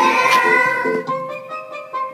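A song's accompaniment played over a loudspeaker, with children singing along; the singing breaks off about a second in while the music holds a long note.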